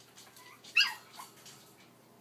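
A West Highland White Terrier gives one short, high-pitched yip a little under a second in.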